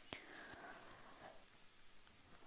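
Near silence: quiet room tone, with one faint click just after the start.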